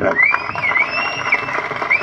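Crowd applauding, with a long high whistle held over the noise that dips in pitch several times.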